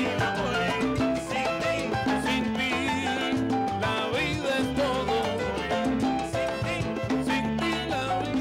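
Live salsa band playing, with congas, timbales and upright bass under a wavering melody line.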